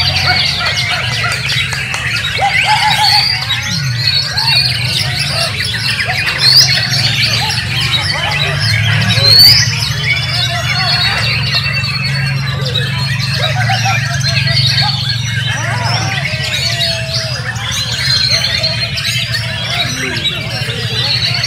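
White-rumped shamas singing at once in full song, a dense tangle of overlapping whistles, chirps and rapid phrases with no break, over a low steady hum. Two loud rising whistles stand out about a third and about halfway through.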